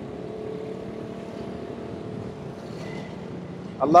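Street traffic: a steady vehicle engine hum that fades away over the first second or two, over a continuous traffic rumble.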